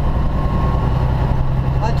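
Steady low drone of an 18-wheeler's diesel engine and road noise, heard from inside the cab while the truck is driven along the highway.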